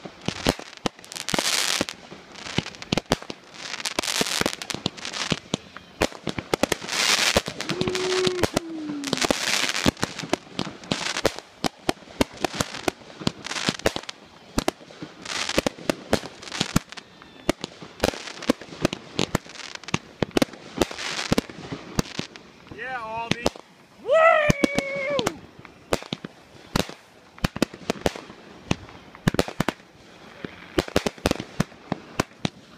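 Aerial fireworks going off: a run of bursts with dense crackling throughout, the bursts coming about a second or two apart for the first ten seconds, then fewer, with scattered pops and crackles in between.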